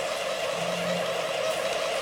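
Steady machine hum with a constant whine, unchanging throughout.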